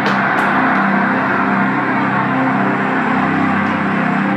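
Music playing loudly and steadily, with a sharp click right at the start.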